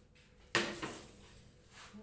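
A single sudden bump or clatter about half a second in, trailing off over about a second.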